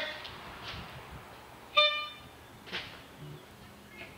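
A single short horn toot on one steady pitch a little under two seconds in, over low background noise.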